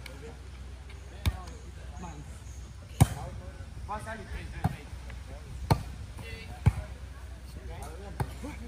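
A volleyball struck by players' hands and forearms during a rally: five sharp smacks a second or two apart, the loudest about three seconds in. Brief shouts from the players come in between the hits.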